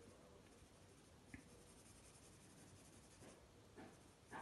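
Faint, rapid scratching of a pencil hatching shading onto sketchbook paper, with a single small click about a third of the way in.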